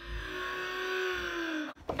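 A woman's long, breathy drawn-out gasp of delight, one held voiced breath lasting about a second and a half, with a short click near the end.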